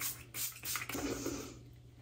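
A handheld pump spray bottle spritzed a few times in quick succession in the first second, each spritz a short hiss, then quiet.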